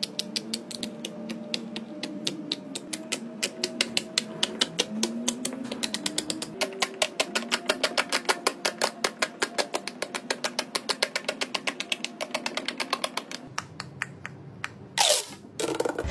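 Silicone bubbles on a large pop-it fidget toy popping in quick succession as both hands press down row after row, several sharp pops a second, stopping about thirteen seconds in. Soft background music runs underneath.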